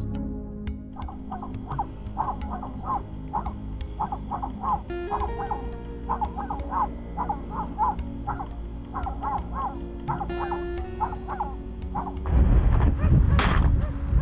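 Background music with a long run of short, repeated barks from dogs, coming in small groups of two or three. Near the end a loud rushing noise takes over.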